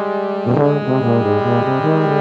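Jazz horn-section music from saxophones and brass: thick held chords over a low bass line that steps through short notes from about half a second in.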